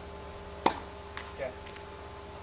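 Tennis racket's strings striking the ball on a forehand groundstroke: a single sharp crack about two-thirds of a second in.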